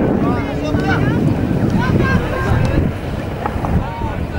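Wind buffeting the microphone with a steady low rumble. Faint short calls rise and fall over it.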